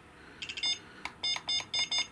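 ISDT T6 smart charger beeping at each step as its cell-voltage setting is scrolled through with the control dial: short high electronic beeps, a quick few about half a second in, then a steady run of about five a second.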